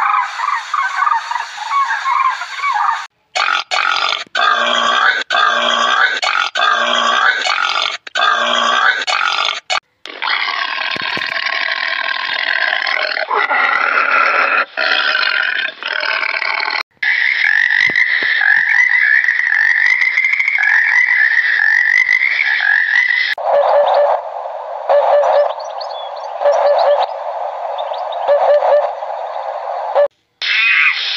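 A run of different animal calls spliced back to back, each clip ending in an abrupt cut. It opens with demoiselle cranes calling. Later clips hold a call repeated about four times a second apart, one long drawn-out high call, and a string of short repeated calls.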